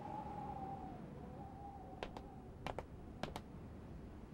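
Quiet scene with a faint wavering tone and three pairs of short, sharp clicks in the second half.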